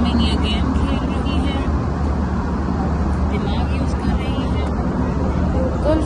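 Passenger aircraft cabin noise in flight: a steady, low-pitched rush of engine and airflow.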